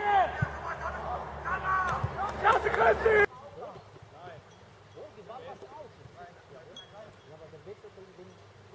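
Men's voices shouting and cheering a goal, loud at first, cut off abruptly about three seconds in; after that, only faint distant voices.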